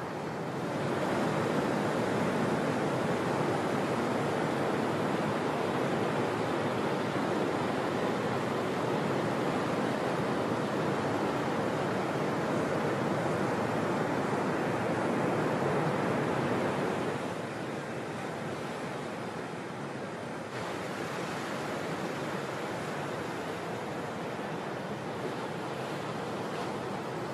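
Ocean surf breaking: a steady wash of whitewater noise, louder from about a second in and dropping back about two-thirds of the way through.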